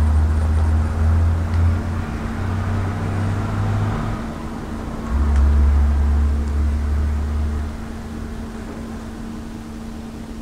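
Industrial lockstitch sewing machine sewing through gathered fabric in two runs: about four seconds at the start, then another from about five seconds in to nearly eight. The motor hums steadily throughout.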